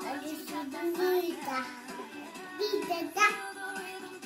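A young child's singing voice over music, with notes rising and falling and a few louder notes near the end.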